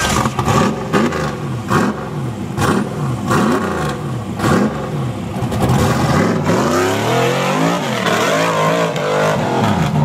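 Rock bouncer buggy's engine revving hard in repeated bursts, pitch climbing and dropping about once or twice a second, with sharp knocks through the first half. After about six seconds it holds higher, wavering revs.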